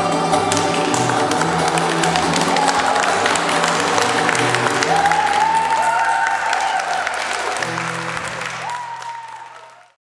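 Audience applauding over background music, with a dense patter of clapping; both fade out near the end.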